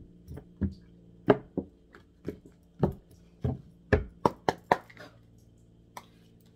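A deck of oracle cards being shuffled and tapped in the hands, about a dozen sharp irregular taps and slaps that come quicker around four seconds in, over a faint steady low hum.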